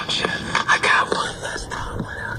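A person's whispered, unclear voice, with several short clicks and knocks from a phone camera being handled.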